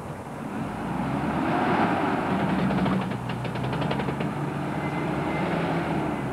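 First-generation Mitsubishi Pajero engine pulling the SUV past close by, its note climbing over the first couple of seconds and then holding steady. A brief rapid rattle of ticks sounds around the middle.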